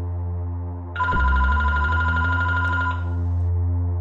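A telephone ringing once, a warbling two-tone ring lasting about two seconds, over electronic music with steady low bass notes.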